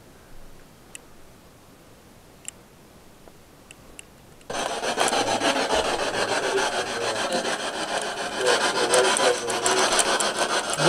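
A faint room with a few small ticks, then about four and a half seconds in a ghost-hunting spirit box cuts in: a loud, steady rasping hiss of radio static with a fast flutter as it sweeps through stations.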